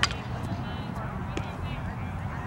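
Indistinct, distant high-pitched voices chattering over a low background rumble, with a sharp click right at the start and a couple of fainter ticks after it.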